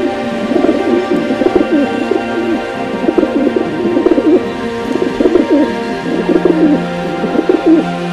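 Domestic pigeons cooing, a string of low wavering coos one after another, over background music with sustained tones.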